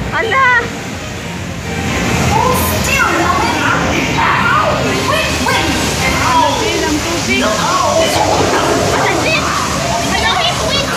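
Water moving around a ride boat in a dark-ride channel, under the ride's soundtrack of music and loud, excited character voices. The sound dips briefly about a second in, then runs on steadily.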